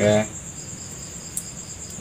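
Crickets chirping in a steady, high continuous trill in the background. A man's word ends right at the start, and there is one faint tick about a second and a half in.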